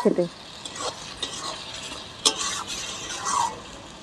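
Spatula stirring mushrooms frying in spiced oil in a metal karahi: a steady sizzle with scraping against the pan, and one sharp click a little over two seconds in.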